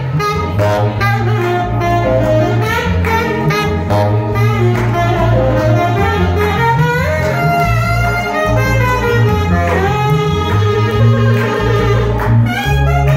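Live jazz band playing: a saxophone plays a bending, gliding melodic line over keyboard accompaniment and a steady stepping bass line, with regular rhythmic hits keeping time.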